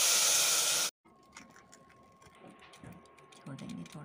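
Water poured onto hot fried turnip and masala in an aluminium pressure-cooker pot sizzles and hisses loudly, then cuts off suddenly about a second in. After that there are only faint clicks and a thin steady hum.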